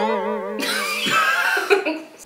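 A sudden wavering, sung-like voice note, then breathy, shrieking laughter from a man and a woman that dies away near the end.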